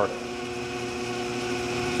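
1952 Shopsmith 10ER running at its slowest speed, about 210 RPM at the headstock, through a belt-driven slow-speed reduction kit while its AC motor turns at a constant 1725 RPM: a steady, even hum.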